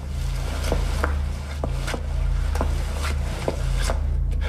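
A run of sharp knocks or taps, irregularly spaced at about two a second, over a steady low hum.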